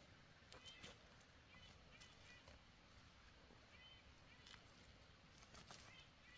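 Near silence: faint outdoor ambience with short, faint high chirps recurring about every second and a few light clicks.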